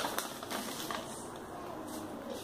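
A paper instruction sheet rustling and crinkling as it is handled and unfolded, in irregular short crackles.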